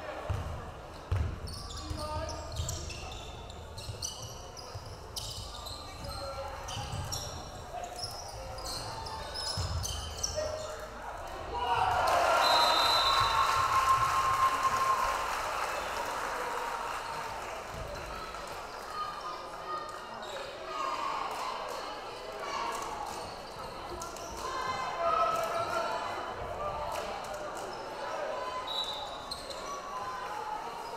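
Live high school basketball game sound in a gym: a ball bouncing on the hardwood court and a crowd chattering. About twelve seconds in, the crowd cheers loudly for a few seconds before settling back into chatter.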